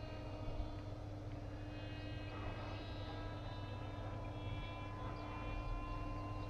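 Electric motor and pusher propeller of an FX-61 Phantom flying wing in flight, picked up by its onboard camera: a steady whine of several high tones over a rush of air, the pitch shifting slightly partway through.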